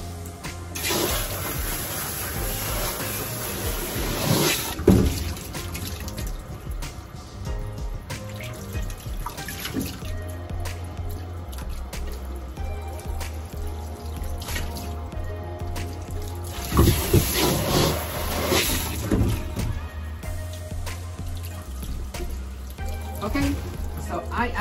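Water from a bathing sprayer running and splashing in a stainless steel grooming tub as a cat is wetted and rinsed, in two spells about a second in and again past the middle. Background music plays steadily throughout.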